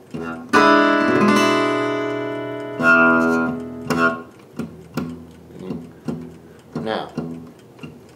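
Guitar playing a blues progression on a few strings against the open low E bass: two chords struck and left ringing, then a run of shorter picked notes about every half second.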